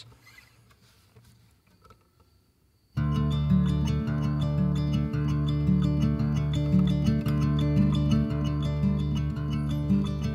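About three seconds of near silence, then an acoustic guitar starts suddenly, playing a song's intro in a steady pattern of picked, ringing notes.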